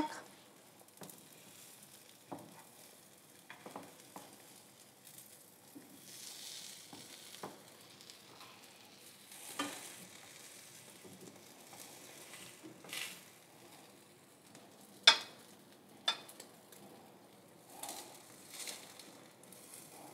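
Cheese omelette sizzling faintly in a frying pan, with scattered scrapes and taps of a utensil against the pan; the sharpest tap comes about three quarters of the way through.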